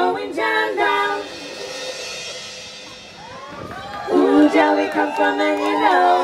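Female backing vocalists singing in close harmony with little or no band under them, breaking off about a second in. After a quieter stretch, whoops and cheers rise and the massed voices come back strongly from about four seconds.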